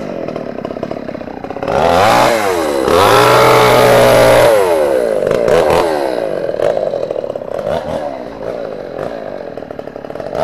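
Two-stroke petrol chainsaw running at an uneven idle, then revved to full speed about two seconds in and held there for a couple of seconds, before dropping back to idle with a few blips and sharp clicks.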